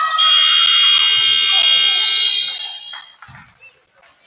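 Gymnasium scoreboard horn sounding the end of the second period as the game clock reaches zero: one loud, steady buzz lasting about three seconds that cuts off near the end.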